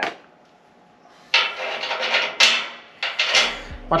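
Metal scraping and clinking as a bolt is worked into a hole in a galvanized steel chassis bracket, in three rough bursts starting about a second in. Background music with a beat comes in near the end.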